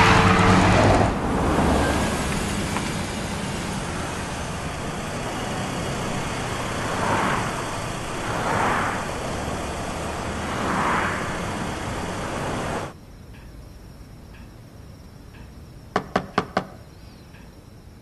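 Steady road noise inside a moving car at night, with three passing vehicles swelling by. About thirteen seconds in it cuts to a quiet room, and near the end someone knocks on a door in a quick run of about five knocks.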